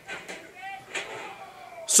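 Faint audio from an indie wrestling match recording in a hall: a few soft knocks and a distant voice. The reactor's own voice cuts in loudly at the very end.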